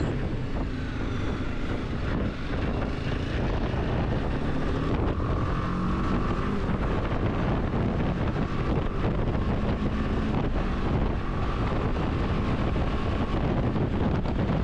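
Motorcycle running steadily at road speed, its engine drone mixed with wind rush over the microphone.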